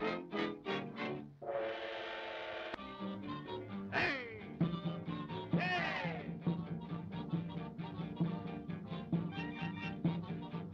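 Swing-style cartoon orchestra music with brass. It opens with quick separate notes and a held chord. Two falling swoops come near the middle, then a steady bouncing beat.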